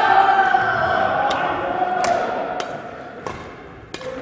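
A badminton drive rally: about five sharp racket strikes on a shuttlecock, one every 0.7 seconds or so, in a left-and-right drive drill. Through the first three seconds a long held voice note slides slowly down in pitch.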